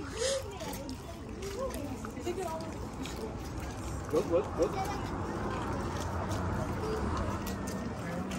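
Background chatter of several people, faint and without clear words, with a few brief louder voices about four seconds in, over a steady low outdoor noise.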